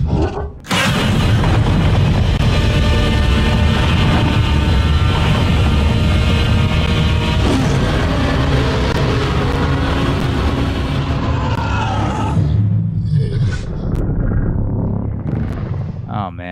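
Monster-movie soundtrack played back: a film score over deep rumbling and booming battle effects. It starts abruptly just under a second in and thins out over the last few seconds.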